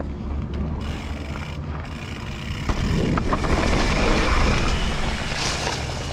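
Propain Tyee mountain bike descending a steep dirt trail: tyres rolling over the dirt, with wind rushing over the camera microphone. It gets louder from about halfway in as speed builds, with a couple of sharp clicks from the bike near the middle.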